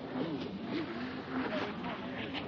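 Jet ski engine running at speed, with people talking over it.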